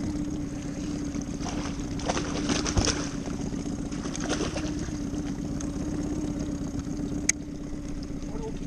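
A hooked fish splashing at the surface as it is reeled in fast, with the splashes loudest about two to three seconds in. Under it runs a steady low hum, and there is a single sharp click near the end.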